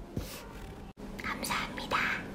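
A woman's whispered, breathy voice in short bursts, broken by a sudden brief dropout to silence about halfway through.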